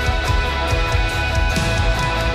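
Live worship band music: sustained chords with guitar over a steady pulse of drum hits.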